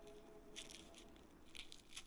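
Faint rustling and scratching of a fabric Velcro strap being wrapped and pressed around a dog harness strap by hand, in a few brief bursts about half a second in and near the end.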